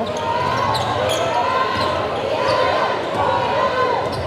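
A basketball being dribbled on a hardwood gym court, with voices carrying through a large hall.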